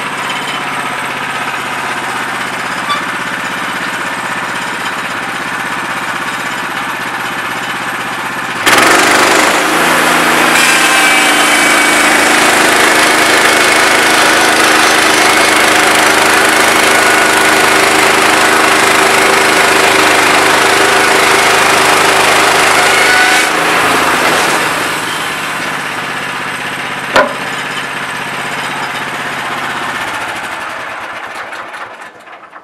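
Woodland Mills portable bandsaw mill's gas engine idling, then throttled up abruptly about nine seconds in as the saw head is pushed along the track through a log, running steadily under load with a high blade whine for about fifteen seconds before settling back to idle. A single sharp click near the end.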